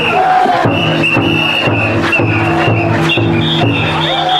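Festival float's taiko drum beating a steady rhythm, about two strokes a second, with the bearers' chanting and crowd voices over it.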